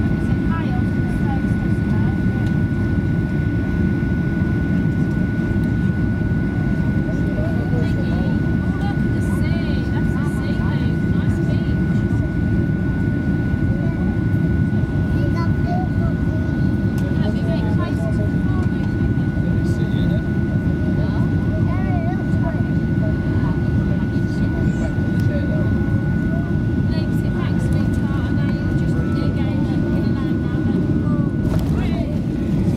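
Cabin noise of a Boeing 737-800 on final approach: a steady low rumble of its CFM56 turbofan engines and rushing air, with a thin steady whine over it.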